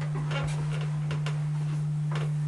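A steady low hum on one pitch, with faint scattered clicks and room noise over it; the piano is not being played.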